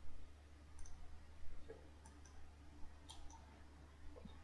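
Faint computer mouse clicks, a handful of separate sharp clicks spread over a few seconds, over a low steady hum.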